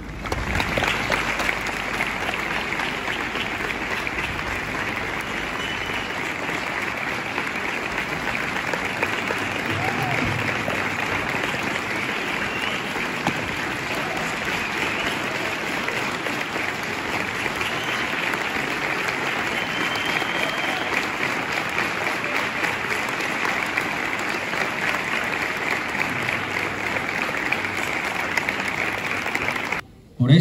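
Steady, sustained applause from a gathered crowd clapping, ending abruptly at the end.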